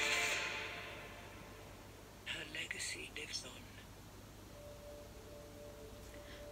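Movie-trailer soundtrack ending: the music fades out over the first second or so. Soft whispered voice comes in about two seconds in, then a single steady held note from about four and a half seconds in.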